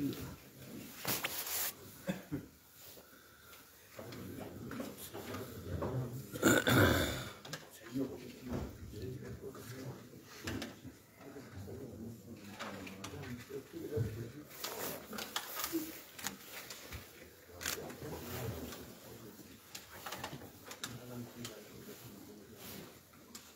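Low, indistinct voices and murmuring from a standing congregation in a crowded mosque, with no clear words. One louder voice-like burst comes about seven seconds in.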